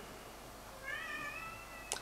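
A single high-pitched animal call, drawn out for about a second, starting near the middle and falling slightly in pitch, ending with a brief click.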